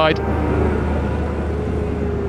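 Supersport racing motorcycle engines running as bikes ride past, a steady low rumble with a faint engine note that slowly falls in pitch.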